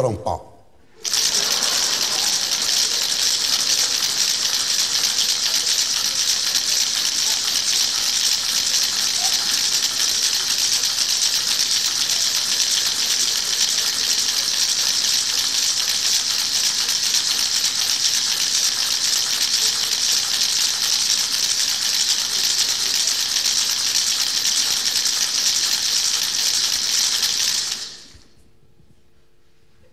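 Theatre audience applauding, a dense, steady clapping that starts suddenly after a brief burst of sound at the very start and dies away near the end.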